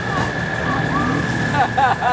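Military truck engine running with a low steady drone, under people talking, and a steady high-pitched whine throughout.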